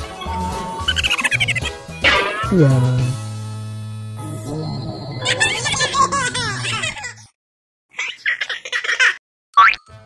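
Cartoon sound effects and music from an animation. A falling boing-like glide comes about two seconds in, followed by held tones and squeaky chattering sounds. After a short silent gap, brief bursts follow and a quick rising whistle-like glide comes near the end.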